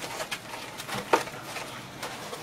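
Cardboard packaging and the cooler's mounting parts being handled inside the box: a few short rustles and knocks, the loudest just after a second in.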